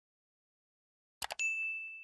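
Subscribe-button animation sound effect: silence, then just after a second in two quick mouse clicks followed by a notification-bell ding, one high ringing tone that slowly fades.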